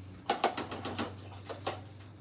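A quick run of small clicks and taps, most packed into the first second and a couple more near the end, over a low steady hum.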